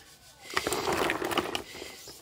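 Water sloshing in a basin as a hand washes live land snails, with a few light clicks of shells knocking together, starting about half a second in.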